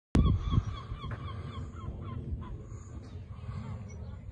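A bird giving a rapid run of short honking calls, about four or five a second, which stops about halfway through, over a steady low rumble.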